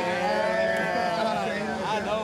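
A man's voice holding one long, drawn-out "ooooh" for nearly two seconds, a teasing vocal reaction.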